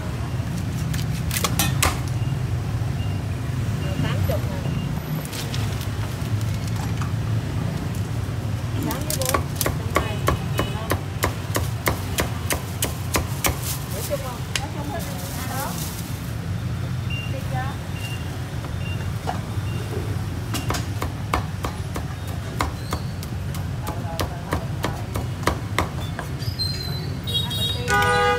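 Meat cleaver chopping roast pork on a thick round wooden chopping block: strings of quick sharp knocks, densest about ten to sixteen seconds in, over a steady low rumble.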